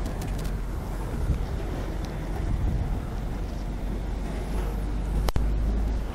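Steady low rumble of outdoor background noise, with one sharp click a little after five seconds in.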